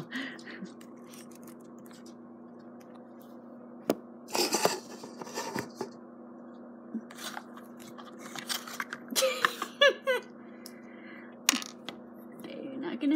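Scattered sharp clicks and short scrapes of hard plastic building-block toy parts being handled: the flame piece is pulled from the Mega Construx dragon figure's mouth and set down on a wooden tabletop. A steady low hum runs underneath.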